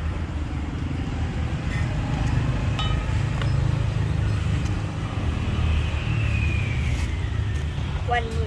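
A steady low rumble, like a motor running, with a few faint clicks about three seconds in.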